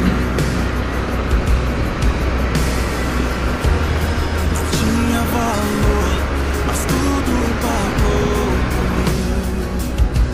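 A worship song with a singing voice plays over continuous wind rumble on the microphone and road noise from a motorcycle accelerating along a road.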